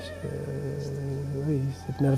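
Background opera music with a singer's wavering vibrato, under a man's low voice held on a long hesitating 'euh' that rises slightly near the end.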